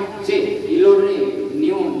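Speech: a man's voice talking into a handheld microphone.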